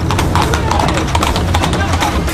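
Hooves of a ridden horse clip-clopping on stone paving, with voices over it.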